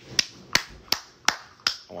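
Finger snaps keeping a steady beat: five sharp, evenly spaced snaps, about one every third of a second.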